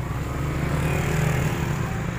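A motor vehicle engine running close by, a steady low hum that swells a little midway.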